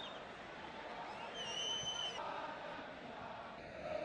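Football stadium crowd: a steady background of crowd noise, with a short high whistle about a second and a half in.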